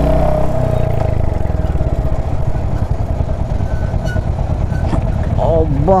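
Royal Enfield Hunter 350's single-cylinder engine running at low speed with a steady low exhaust beat, heard from the rider's seat. Its note eases down in the first second as the bike slows.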